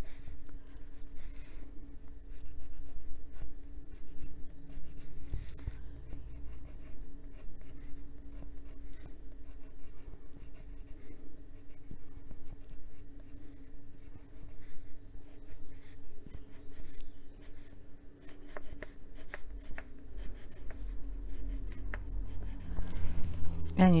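Prismacolor Premier white coloured pencil scratching on paper in short, irregular back-and-forth strokes as highlight lines are drawn, over a faint steady hum.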